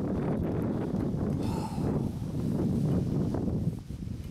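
Wind buffeting the microphone in a steady low rumble, with a brief rustle about a second and a half in.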